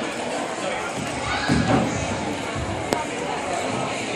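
Indistinct chatter of spectators in a gymnasium, with one sharp snap a little before three seconds in.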